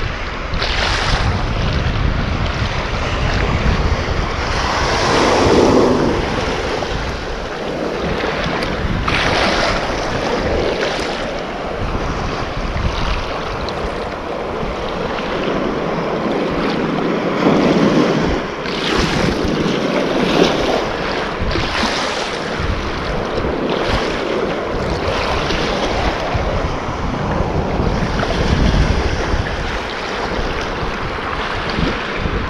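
Sea waves washing and breaking over rocky shallows, swelling every few seconds, with wind buffeting the microphone.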